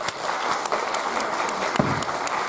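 Audience clapping, which builds up to full applause about half a second in.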